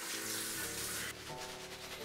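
Bathroom tap running briefly as a shaving brush is wetted, cut off about a second in. Faint background music carries on underneath.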